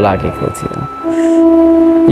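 Background music: a single steady instrumental note comes in about halfway through and is held, carrying on under the recitation.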